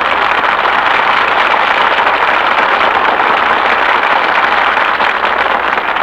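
Studio audience applauding steadily, heard on a 1940s radio broadcast recording.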